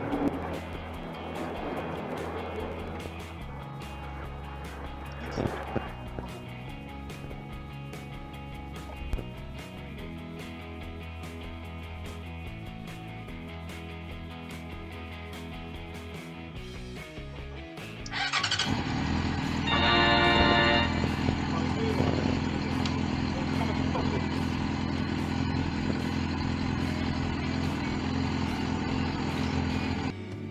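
Background music for the first eighteen seconds or so. Then a Yamaha FZ6N's inline-four engine cranks on a jump start, catches and keeps running; the bike's own battery is flat.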